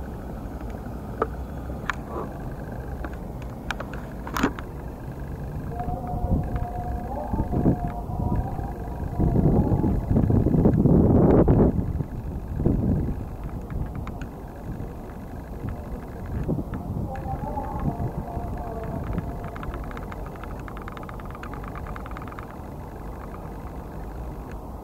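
Wind rumbling on the microphone, swelling to its loudest in a gust about ten seconds in, with faint voices underneath.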